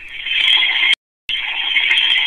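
Loud, steady high-pitched hiss that cuts out completely for a moment about a second in, then carries on.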